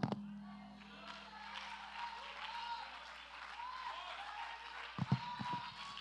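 Congregation responding to the preacher: faint scattered voices calling out over light applause, with a few sharper hand claps near the end.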